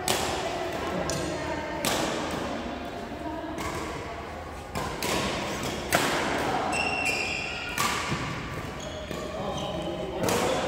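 Badminton rally in a large, echoing hall: sharp cracks of rackets striking a shuttlecock every one to three seconds, with a few short high squeaks of shoes on the court floor. Voices murmur in the background.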